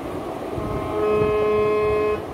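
Harmonium holding a chord, its reeds coming in about half a second in and then sounding steadily. A low background hum runs under it.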